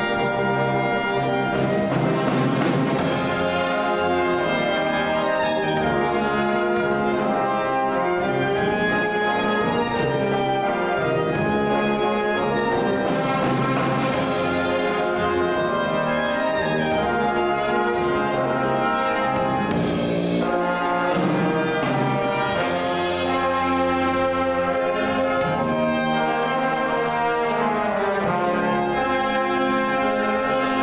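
A school wind band playing live: saxophones and brass over a drum kit keeping a steady beat, with a few cymbal crashes.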